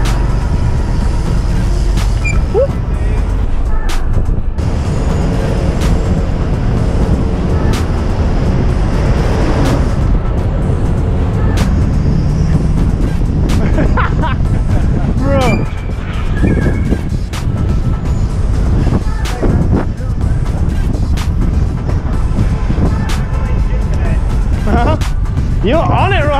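Wind rushing over an action camera and city traffic noise while a BMX bike is ridden between cars and a bus, with scattered sharp knocks.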